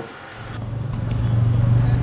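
Low rumble of a motor vehicle on the road, growing steadily louder from about half a second in.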